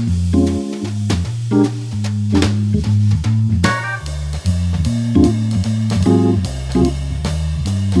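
Hammond organ and drums playing a jazz blues backing track. The organ's bass line steps under held organ chords, with drum-kit cymbal strokes on top.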